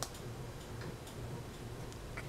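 Faint light ticking, a few small clicks roughly half a second apart, over a low steady room hum.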